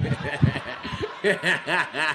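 A man laughing hard, a quick run of 'ha' pulses that comes thickest in the second half.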